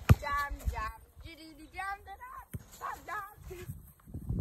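A football kicked on grass: a sharp thud at the very start, the loudest sound, and a fainter one about two and a half seconds in. Between them come short, high-pitched wordless vocal sounds.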